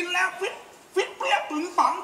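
Stage actors' spoken Thai dialogue: three short, high-pitched phrases with brief pauses between them.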